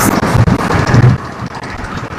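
Roadside traffic noise with wind on the microphone, a heavy rumble that is loudest in the first second and eases after about a second and a half.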